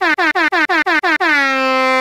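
Air-horn sound effect: a quick run of short blasts, about six a second, then one long held blast.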